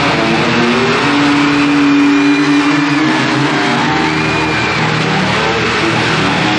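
Live hard rock with a lead electric guitar from a Les Paul-style guitar playing long held notes, one sliding up early on and another bent about four seconds in, over the full band.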